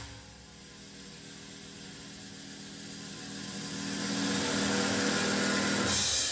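A suspense build-up sound, a continuous rushing noise over a steady low hum, growing steadily louder through the first four seconds and then holding loud. It is the tension-building sound before the winner of a battle is announced.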